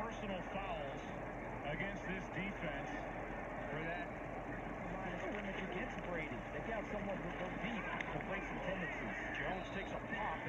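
Faint football broadcast audio: a commentator's voice over a steady haze of stadium crowd noise.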